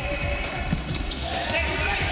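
Futsal ball being kicked and bounced on the court floor, several sharp knocks, with players' voices shouting in the hall.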